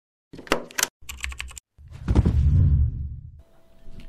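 Intro sound effects: two quick runs of sharp clicks, then a loud low boom about two seconds in that fades out.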